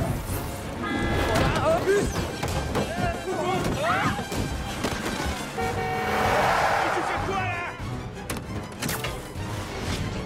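Action-film soundtrack: music over city street noise, with a car rushing close past and sounding its horn about six seconds in, and a few sharp impacts near the end.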